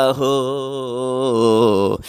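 A man chanting a line of Urdu devotional verse (naat) in a single voice, drawing out one long note with a wavering pitch. The note stops near the end.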